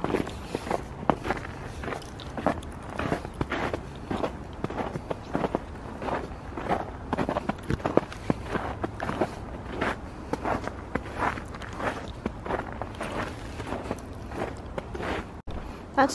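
Quick, even footsteps in snow on a trail, a brisk walking pace.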